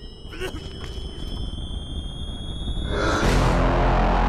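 Trailer sound design: a cluster of high tones slowly rising in pitch, swelling into a loud noisy whoosh with a deep rumble in the last second.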